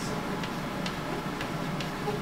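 A few light, sharp clicks at uneven intervals, four in two seconds, over a steady low room hum.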